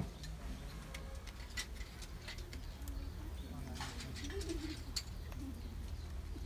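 A kitchen knife cutting a small green fruit held in the hand, giving light, scattered ticks and clicks. A dove coos low in the background.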